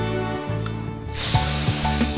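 Food starts sizzling in hot oil in a pan suddenly about a second in, a loud steady hiss, over background music.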